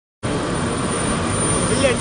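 Wind buffeting a handheld camera's microphone: a steady loud rushing noise with a gusty rumble underneath. A man's voice starts near the end.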